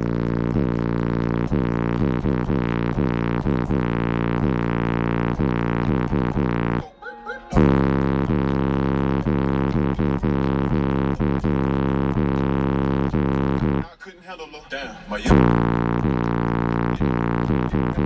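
Bass-heavy music played loud through two Sundown Audio X-15 V3 15-inch subwoofers on a Ruthless Audio 10K amplifier, heard inside the vehicle's cabin: a sustained low bass drone with rapid repeated note hits. The music breaks off briefly twice, about seven seconds in and again about fourteen seconds in.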